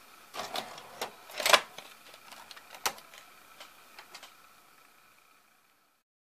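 Mechanical clicks and short whirs from a Sony SLV-R1000 Super VHS VCR as it is switched off, with one sharp click about three seconds in and a few lighter ticks after it. The sound fades out near the end.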